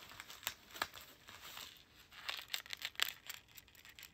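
White paper gift wrapping crinkling and rustling in the hands as a pair of earrings on a card is unwrapped: a string of short, irregular crackles.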